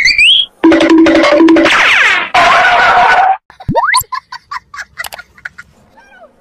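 Comedy sound effects and music edited over the clips. A rising glide at the start is followed by a loud stretch of held notes. About four seconds in comes a quick upward glide, then a run of short pitched blips that dies away before the end.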